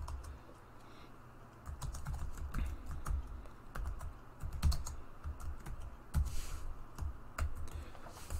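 Computer keyboard being typed on: a run of quick, irregular key clicks that starts about a second and a half in.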